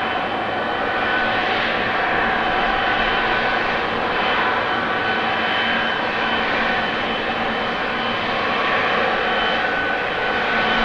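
Widebody twinjet's engines running steadily as the airliner turns onto the runway: a steady jet rumble with several high whine tones held over it.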